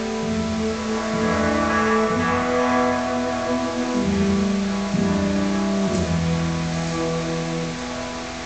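A live jazz quintet of tenor saxophone, yangqin (Chinese hammered dulcimer), cello, double bass and drums playing a slow passage. Long held notes change pitch every second or two.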